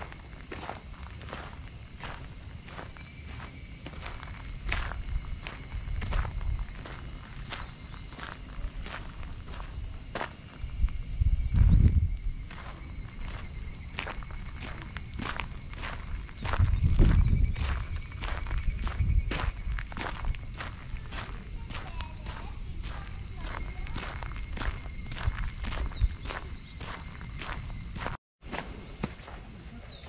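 Footsteps crunching on a sandy gravel path, about two steps a second, over a steady high chorus of insects. Wind buffets the microphone with low rumbles twice, about 12 and 17 seconds in.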